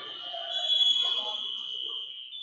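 A steady, high-pitched electronic tone held unbroken, over faint voices and hall noise.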